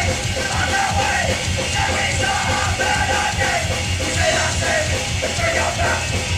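Hardcore punk band playing live: distorted electric guitars and drums with shouted lead vocals, loud and unbroken.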